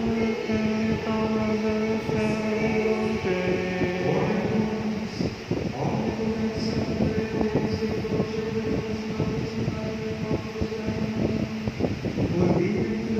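A slow hymn sung in church, with long held notes that step from one pitch to the next.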